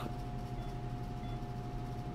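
Steady room hum with a constant mid-pitched tone, and a few faint, short, high beeps.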